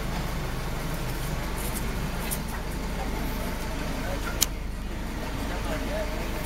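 Steady low rumble of an idling vehicle engine under the murmur of voices in a crowd, with one sharp click about four and a half seconds in.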